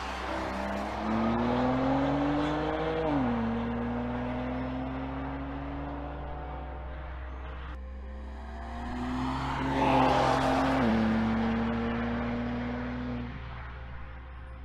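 BMW X4 M's twin-turbo straight-six accelerating hard, its pitch rising and then dropping sharply at an upshift about three seconds in. After a cut, a second run rises to its loudest around ten seconds and drops at another upshift about a second later.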